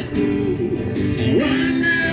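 Live singing over strummed acoustic guitar: a voice holds a long wavering note in the middle of a sung line, with a quick upward slide about one and a half seconds in.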